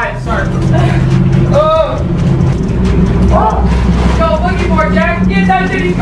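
Low steady engine and road drone of a moving U-Haul box truck, heard from inside its cargo box, with scattered shouts and voices over it.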